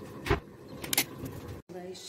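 Two short knocks a little under a second apart as the recording phone is handled, then a sudden break in the sound.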